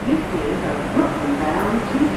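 Indistinct voice of the subway car's automated announcement, over the steady hum of the stopped R142 train.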